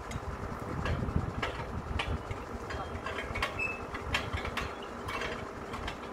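Truck-mounted borewell drilling rig's engine running steadily. Irregular short knocks and clicks sound over it as steel drill pipes are handled.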